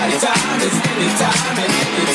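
Nu disco / Italo disco dance music in a DJ mix, with a steady beat and a sharp tick about four times a second over a bass line and melody.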